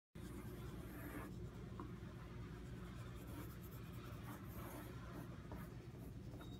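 Yellow wooden pencil scratching faintly on paper as someone draws, over a steady low room hum. The sound begins just after a moment of silence.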